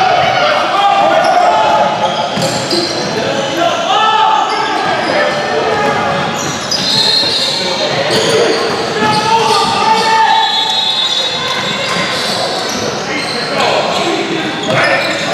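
Basketball game in a gym: a basketball bouncing on the hardwood court amid indistinct shouts from players and spectators, echoing in the large hall.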